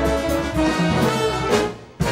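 Big band playing jazz: saxophone section together with trumpets and trombones. The full ensemble ends a phrase with a sharp accented hit about one and a half seconds in, then cuts off and the sound dies away.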